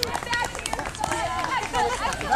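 Several children's high voices talking and calling out over each other, with a few scattered hand claps.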